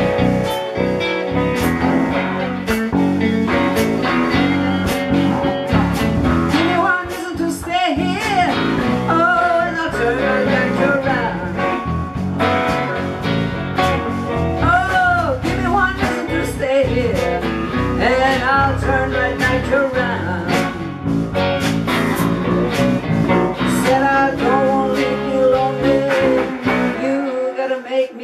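Live blues band playing an instrumental break, with drums, electric bass and electric guitars; a lead guitar plays a solo with bent notes. Near the end the bass and drums drop out briefly.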